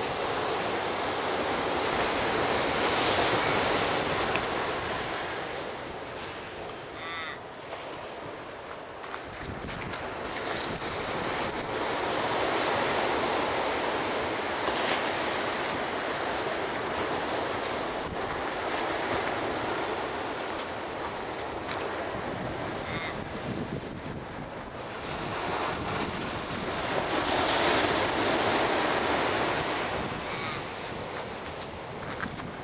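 Surf breaking on a sandy beach, a wash of noise that swells and fades in slow surges as each set of waves comes in.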